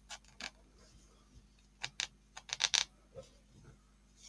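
Small handling clicks and taps as hands work a knitted tube and its yarn. A few come near the start, then a quick run of them from about two seconds in to nearly three seconds.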